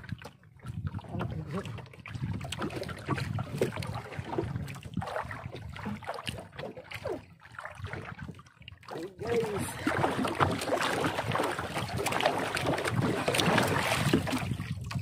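Sea water slapping and sloshing against the hull of a small outrigger boat, with wind buffeting the microphone. The sound grows louder and busier over the last few seconds.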